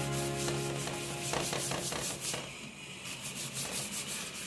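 Flat paintbrush scrubbing back and forth across paper in quick repeated strokes, spreading a watery acrylic wash. Faint background music fades out in the first half.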